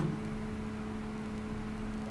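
Pause in speech: steady low hum with a faint hiss, the background room tone of the studio.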